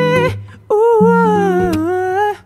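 Male pop vocal singing the end of "feel me", then, after a short breath, a long held "oh" that slides slowly downward, over soft sustained backing chords.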